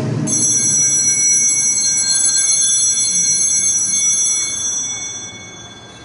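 Altar bells rung at the consecration of the Mass, marking the elevation: a bright, high, many-toned ringing that starts suddenly, holds for about four seconds, then dies away.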